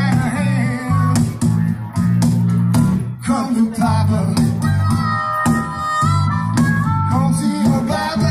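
Live band music with a stepping bass line under long held melody notes.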